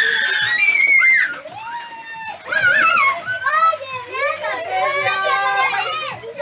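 A group of young children shouting and shrieking excitedly over one another as they scramble on the floor for piñata candy, loudest in the first second.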